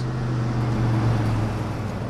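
A motor vehicle's engine and road noise swelling and easing off, over a steady low drone, like a car driving past.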